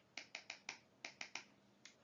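A run of about nine light, sharp clicks in uneven groups, from someone working a computer.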